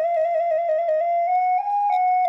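Music: a solo flute playing a short phrase. It opens with a quick wavering trill, then moves through a few held notes that step up and come back down.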